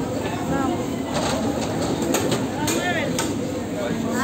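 A few short chirping calls, each an arched, quickly repeated note, sounding over a continuous murmur of background voices and low hum, with a few light clicks.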